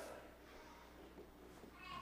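Near silence: the room tone of a pause in speech, with a few faint pitched traces and a faint rising sound near the end.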